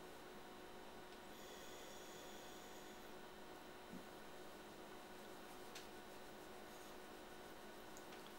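Near silence: room tone with a faint steady hum and a single faint click about six seconds in.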